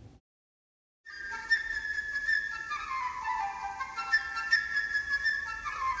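A flute playing a melody of changing notes, starting about a second in after a moment of complete silence.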